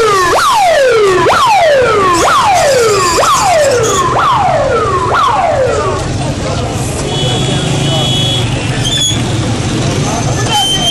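Emergency vehicle siren sounding in quick repeated cycles, each a sharp rise then a falling sweep, about one a second. It cuts off about six seconds in, leaving a low rumble.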